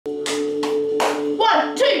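Three sharp hand claps, about a third of a second apart, over music holding two steady notes. A voice then starts counting.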